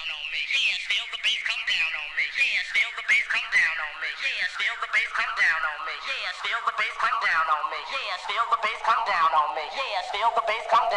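Electronic dance music from a DJ mix played with its bass cut away, leaving only thin mid and high parts with a warbling, voice-like melodic line. The lower range fills in gradually toward the end.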